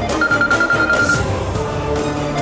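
Mobile phone ringing: one high, trilling ring lasting about a second, over background score music.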